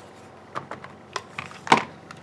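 Several light clicks and taps of a clear plastic CD case, used as a stamp positioner, being handled as a rubber stamp is lifted and pressed; the loudest tap comes near the end.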